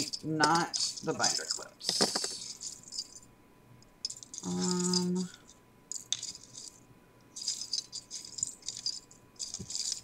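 Metal and plastic-coated paper clips rattling and clinking as fingers rummage through them in a small container. The clinking comes in bursts over the first three seconds and again from about six seconds on.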